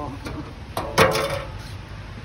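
A sharp metallic click from a drink can's pull tab being worked, about a second in, immediately followed by a man's loud exclamation.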